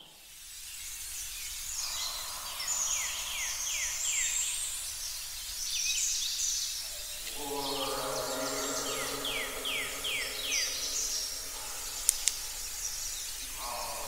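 Birdsong: quick runs of about five falling whistled notes, repeated, over a steady hiss. About halfway through, a held low chord of several notes comes in underneath.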